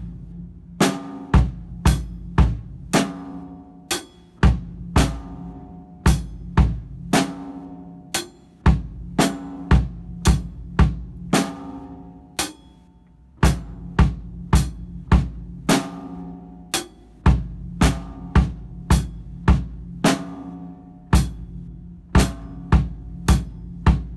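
Acoustic drum kit played with sticks: snare and bass drum strikes about twice a second, with cymbals ringing after some of the hits.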